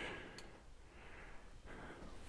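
Quiet workshop room tone with a single faint click about half a second in, from handling the motorcycle fork's metal parts.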